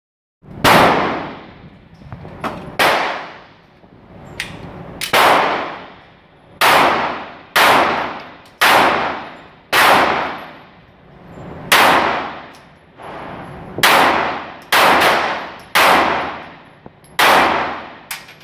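Semi-automatic pistol fired shot by shot, about a dozen shots spaced one to two seconds apart, each with a long ringing echo off the concrete walls of the indoor range.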